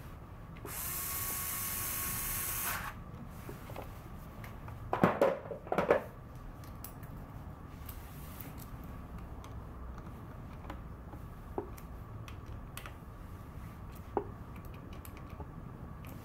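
A power driver runs for about two seconds, driving in the screws of the clutch inspection cover on a Buell XB12's primary cover. A few seconds later come two short louder knocks, then scattered small clicks of tools on metal.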